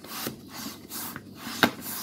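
Hand balloon pump being worked in quick strokes, each push a hiss of air and the piston rubbing in its barrel, about two strokes a second, with a sharp click near the end.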